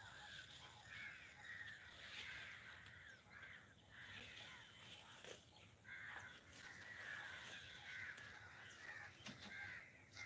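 Faint chorus of birds, many short overlapping calls repeating throughout, with a single sharp click about eight seconds in.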